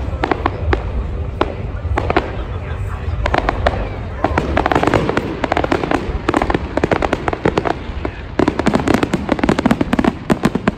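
Aerial fireworks bursting: a rapid run of bangs and crackling, thickest near the end.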